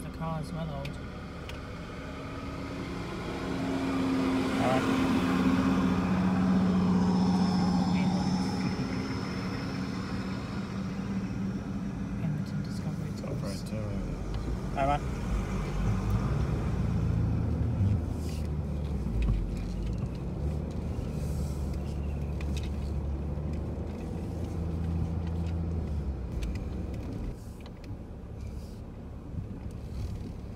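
Four-wheel-drive engine running at low speed while crawling along a soft sand track, heard from inside the cabin. A steady low hum swells louder a few seconds in, then eases.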